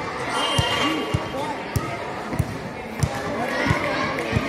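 A basketball dribbled on a hard court, bouncing steadily a little under twice a second, with girls' voices chattering in the background.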